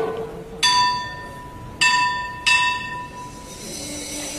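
A small bell-like metal percussion instrument of the Cantonese opera ensemble is struck three times, each strike ringing on with a clear high tone. A single plucked-string note sounds just before the first strike.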